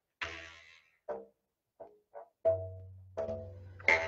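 Paint-coated rubber bands stretched over a baking pan being plucked: about six separate twangs, each a short pitched note that rings briefly and fades.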